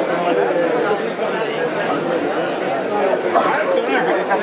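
Crowd chatter: many voices talking over one another at once, with no single voice standing out.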